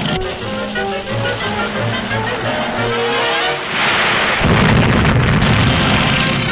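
Dramatic orchestral cartoon score with a sound effect laid over it: about four seconds in, a loud rushing noise swells, then a heavy low rumble takes over and is the loudest part.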